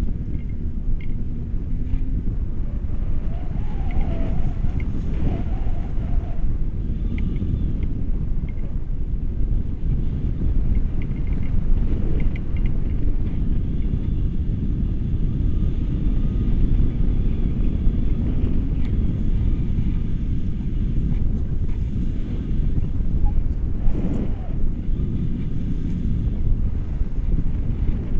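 Wind buffeting a camera microphone during a paraglider flight: a steady, loud, low rumble of rushing air.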